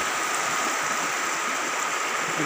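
Fast, turbulent floodwater of a swollen river rushing in a steady, even wash of noise.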